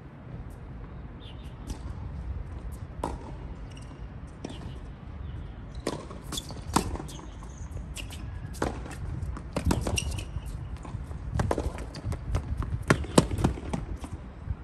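Tennis rally on a hard court: sharp pops of racket strings striking the ball and the ball bouncing, coming in quick runs with the loudest hits near the end, over a low steady background rumble.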